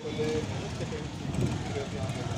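Small motorcycle engine idling, with street noise and faint voices.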